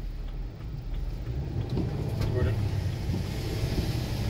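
Cabin noise of a car driving on a wet road: a steady low rumble from the engine and tyres, heard from inside the car. A faint, brief voice about two seconds in.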